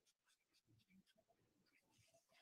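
Near silence: room tone with faint scattered rustles and small clicks.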